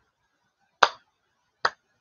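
Slow hand claps, two sharp claps a little under a second apart, keeping a loose beat.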